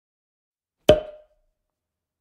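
A single sharp knock-like percussive hit about a second in, with a short ringing tone that dies away within half a second.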